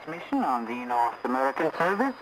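A voice speaking on a shortwave radio broadcast, received off the air, with a faint steady high whistle under it.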